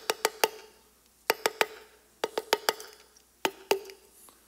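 Sharp taps on a handheld cup, in four quick groups of three to five with short pauses between, tapping out Morse code, the submarine's message "Is there hope?". A faint ringing tone from the cup hangs under the taps.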